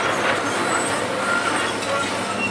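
Hitachi tracked excavator working close by: its diesel engine runs steadily under load as the boom and bucket move, with a few faint short high squeaks over it.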